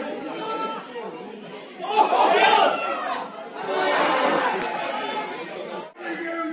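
Indistinct shouting and chatter of players and spectators at a football match, with a louder burst of shouting about two seconds in.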